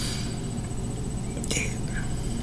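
A pause in a woman's speech: a steady low background hum, with one short breathy, whisper-like sound from her about one and a half seconds in.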